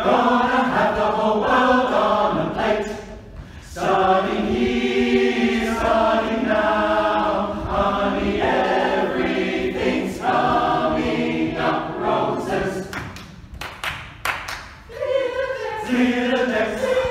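A choir singing, with short breaks between phrases about three seconds in and again near the end.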